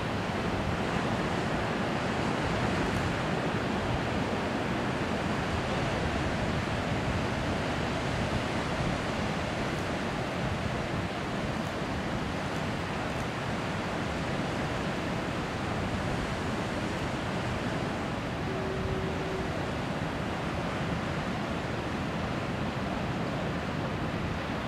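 Heavy ocean surf breaking, a steady deep rush of waves with no pauses, mixed with wind.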